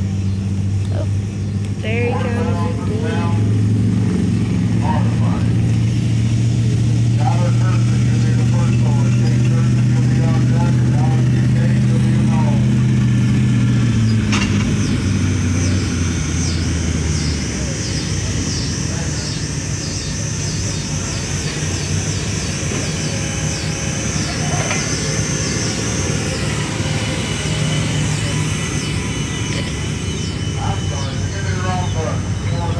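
Pulling tractor's engine running hard under load as it drags the weight sled down the track: a steady low drone at an even pitch that dies away about fifteen seconds in.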